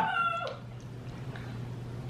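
A short, high-pitched squealing cry with a slight downward slide in pitch, lasting about half a second at the start, then only a faint steady low hum.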